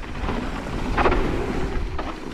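Wind rushing over an action-camera microphone with the rumble of mountain bike tyres on a dry, loose dirt trail at speed. A short sharp knock, typical of the bike rattling over a bump, comes about a second in.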